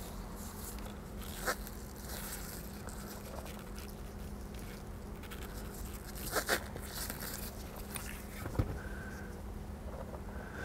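Crimping pliers squeezing a blue insulated crimp connector onto a wire: faint handling sounds with a few short clicks, the sharpest about six and a half seconds in. A steady low hum runs underneath.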